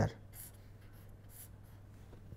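Faint scratching of a pen on paper, a few short strokes as a box is drawn around a written term, over a steady low hum.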